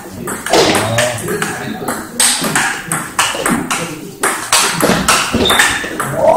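Table-tennis rally: the celluloid-type ball cracking off the rubber paddles and bouncing on the table in a quick series of sharp clicks, about two to three a second. Voices are heard in the background.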